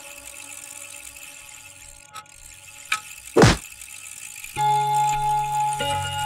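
Electronic sound effects for an animated clock graphic: a soft held tone with a few faint clicks, then a sharp hit about three and a half seconds in, the loudest moment. From about four and a half seconds in, a louder sustained chord rings over a low hum.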